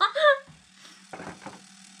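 Steady low buzz of an EMS face-line beauty belt's vibration mode running on the chin, with a woman's laughter at the start. A second, higher hum joins about one and a half seconds in.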